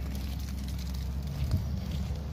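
Steady low rumble of a diesel engine running, the excavator working on the road nearby, with a single light knock about one and a half seconds in.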